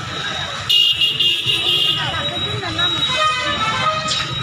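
A vehicle horn honking, starting suddenly under a second in and sounding high and steady for most of the rest, over people talking and street noise.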